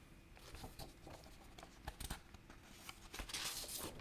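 Faint rustling and small clicks of paper pages being handled, with a louder rustle in the last second.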